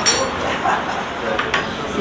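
Café background chatter, with a short ringing clink of a metal spoon against a porcelain cup at the very start.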